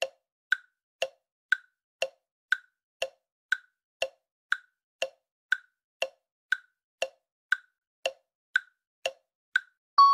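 Clock-style tick-tock countdown-timer sound effect: short clicks about twice a second, alternating a lower tick and a higher tock, with no music under them.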